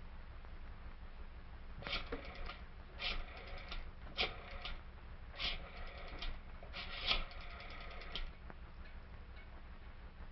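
Rapid mechanical clicking in five bursts, each under a second to about a second and a half long, at roughly ten clicks a second with a metallic ring.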